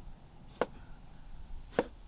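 Kitchen knife chopping tomato on a bamboo cutting board: two sharp knocks of the blade hitting the board, about a second apart.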